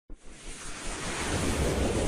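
Whoosh sound effect of a TV news title sequence: a rush of noise that swells steadily louder, after a short click at the very start.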